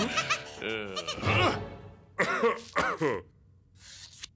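Animated cartoon characters' wordless voices: short, pitched utterances that rise and fall in quick groups, with music underneath, stopping about three seconds in.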